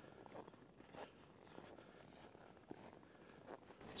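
Near silence, with a few faint, irregular crunches of footsteps in snow.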